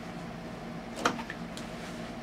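Brother NQ470 domestic sewing machine during free-motion quilting: a faint steady hum with a single click about a second in.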